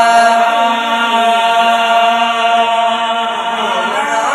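Qawwali singing: male voices hold one long note together over sustained harmonium chords. The tabla drumming stops just after the start, leaving only voices and harmonium.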